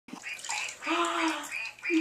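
Water sloshing and splashing in a bathtub, with a high-pitched voice making a short drawn-out sound about a second in.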